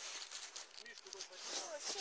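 Clothing rustling and scraping close against the microphone in a crackly stream of small sounds, with a voice speaking briefly near the end.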